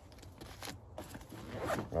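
Zipper on the main compartment of a Maxpedition Pygmy Falcon II backpack being pulled open around the pack, a quiet, irregular rasping.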